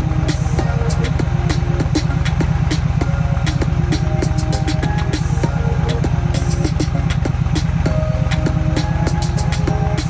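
Music with a drum beat and a melody playing through the Yamaha V-Star 1300 Deluxe's factory fairing speakers, fed over Bluetooth from an Mpow receiver, over a steady low throb.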